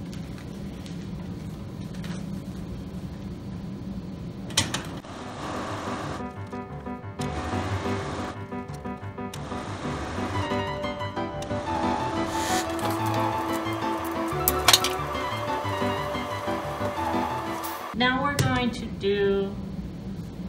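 An electric sewing machine runs with a steady low hum for the first few seconds. Background music with held notes then comes in about five seconds in and cuts off suddenly near the end.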